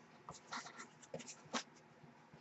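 Faint scuffs and light taps of a large bare-board art folio being turned over in the hands: a few short handling sounds, the clearest about one and a half seconds in.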